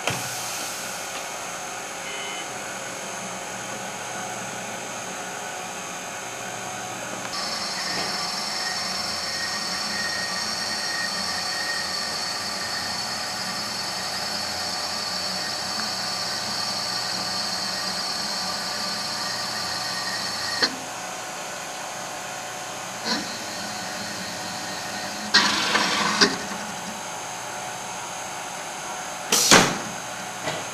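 Automated stator winding machine running with a steady mechanical hum. From about a quarter of the way in to about two-thirds, a high motor whine joins it. Near the end come a few short knocks, a brief hiss and one louder sharp burst.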